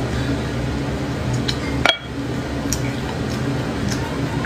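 Eating sounds from spicy beef bone marrow: scattered small clicks of biting and a metal spoon working inside the bone, with one sharp clink about two seconds in. A steady low hum runs underneath.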